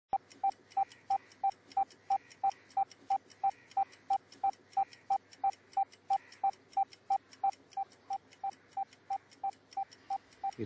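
Homemade bomb's timer beeping: short, even, mid-pitched electronic beeps, about three a second.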